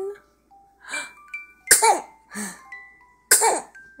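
A plush musical bunny toy playing a slow tune of single held notes stepping up and down in pitch. Two loud, short, breathy bursts of a voice cut in, one near the middle and one near the end.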